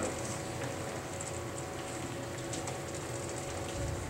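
A pause in a church sanctuary: steady low room hum, with faint rustles and clicks of Bible pages being turned to the passage.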